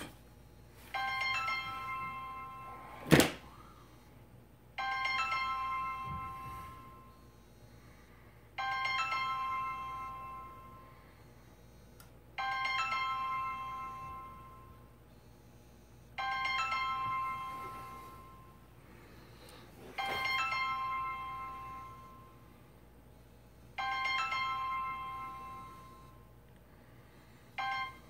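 A phone ringtone, ringing over and over: each ring is a chime of several electronic tones that fades out over about two seconds and repeats about every four seconds, seven times, with an eighth starting near the end. A single sharp click comes about three seconds in.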